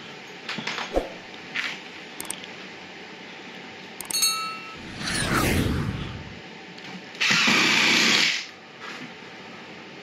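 Cordless drill driving long screws through 2x4 shims into the bottom of a door jamb: small knocks and clicks, then two short runs of the drill about five and seven seconds in, the first falling in pitch.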